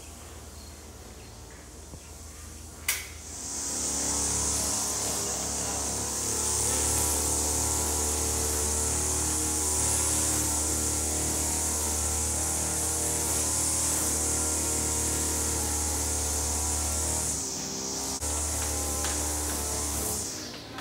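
Chainsaw cutting into a tree trunk, heard from below. It starts about three and a half seconds in and runs steadily, with a brief dip near the end.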